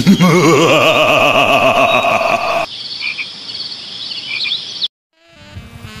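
A loud warbling sound effect with a rapidly wavering pitch, lasting about two and a half seconds, over a background of insect and bird chirps. The chirps carry on alone, then stop dead, and music starts near the end.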